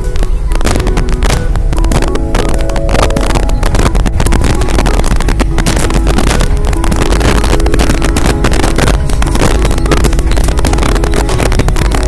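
A vehicle driving along a rough dirt track, its engine and road noise loud and continuous, with wind buffeting the microphone.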